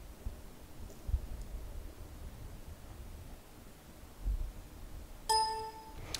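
A single short buzzy electronic beep, about half a second long, near the end: the completion signal of a device programmer, marking the PIC16F627 microcontroller as successfully programmed. Before it there are only faint low thumps.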